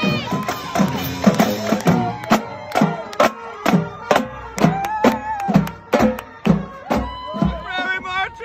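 Marching band drumline, with tenor drums and snares, playing a steady cadence of about two hits a second just after the horns' held chord cuts off. Crowd noise and cheering sit under it.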